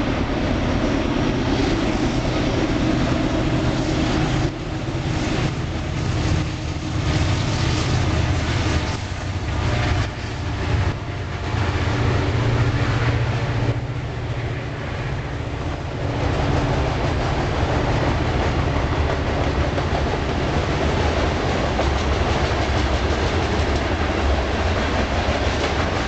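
A train rolling past, a steady heavy rumble of wheels on rail, with a stretch of rhythmic clickety-clack from the wheels crossing rail joints through the middle.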